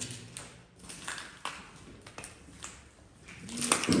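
Footsteps on a debris-strewn floor, heard as a string of irregular light taps.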